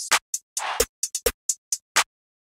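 Programmed trap-style hi-hats and claps from a drum machine, playing alone as a sparse, uneven pattern of short, crisp hits with no bass or melody.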